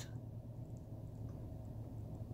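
Quiet car-cabin background: a faint, steady low hum with a couple of tiny ticks.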